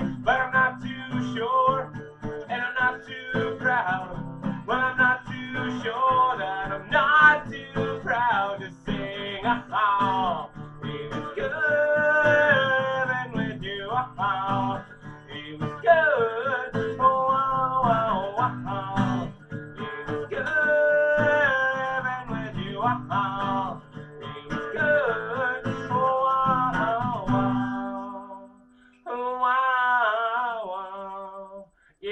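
Acoustic guitar strummed with a man singing along. About two seconds before the end the guitar stops, and after a brief pause the voice carries on alone.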